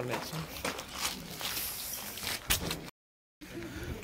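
Low background of faint voices and camera-handling noise with a couple of sharp knocks, broken about three seconds in by half a second of dead silence where the recording is cut.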